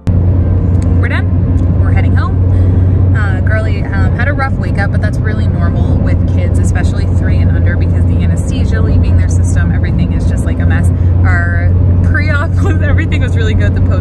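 A woman talking inside a car cabin, over a steady low hum from the car.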